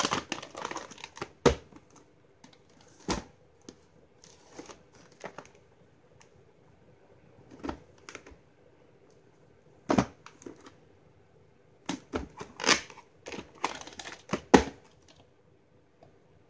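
VHS cassettes and their cases being handled by hand: irregular plastic clicks and knocks with rustling of the sleeves as a tape is taken out and turned over.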